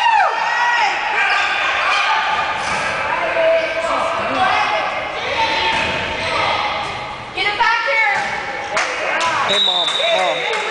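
Basketball game noise in a gymnasium: unclear voices and shouts from spectators and players echoing in the hall, with a basketball bouncing on the wooden court. Near the end a single long, steady whistle blast sounds.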